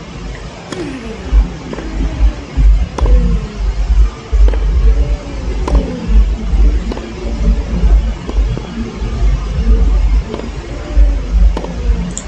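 Tennis ball struck back and forth in a baseline rally on a grass court: sharp pops of racket on ball every second or two, over a steady low rumble.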